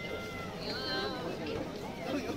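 People's voices over background chatter in a busy pedestrian street; the words are indistinct.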